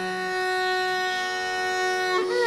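Carnatic classical concert music: a single note held steady without ornament, with a lower sustained note dropping out shortly after the start.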